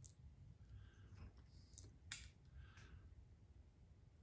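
Near silence: faint low room rumble with a few light clicks, the clearest about two seconds in.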